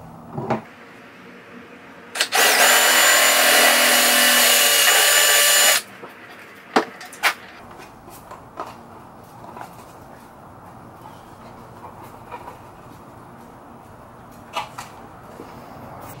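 Cordless drill running at a steady speed for about three and a half seconds, boring a hole for the wiring harness through a plastic A-pillar trim piece. A few sharp knocks from handling the part follow.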